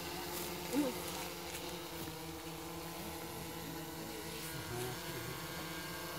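Quadcopter drone hovering low overhead, its rotors giving a steady hum of several pitches.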